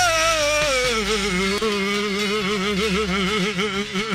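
A man singing one long held note with a wide vibrato into a microphone. The note slides down in pitch over the first second and is then held, over a steady low backing from the band.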